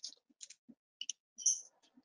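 A quick run of short, sharp clicks and rustles, about half a dozen in two seconds, from a participant's computer microphone on a video call. The loudest is about one and a half seconds in.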